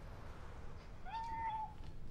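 A single short pitched cry about a second in, rising quickly and then held steady for under a second, over a low steady rumble.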